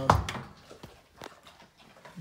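A sharp knock with a brief ring right at the start, then a few faint, separate light clicks.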